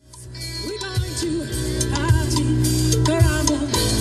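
Band music fading in from silence over about the first second: drum kit with strong beats about once a second under bass and a melody line.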